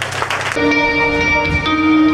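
A live band playing loud: a dense, noisy crash of instruments for the first half-second, then several held notes ringing on.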